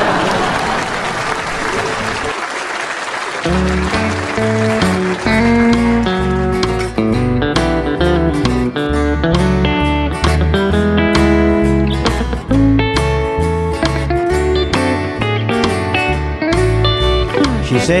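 Audience laughter and applause for about the first three and a half seconds, then a country band's instrumental intro begins: electric guitar lines over a steady bass guitar beat. The singer comes in right at the end.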